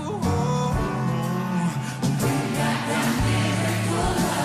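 Live band music with singing: sustained chords and bass notes under a sung melody, with regular percussion strikes.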